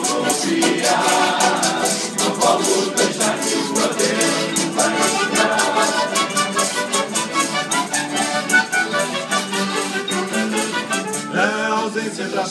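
Live acoustic guitars and a piano accordion playing an instrumental passage of a Portuguese bailinho song, with an even strummed beat. Male voices come back in singing just before the end.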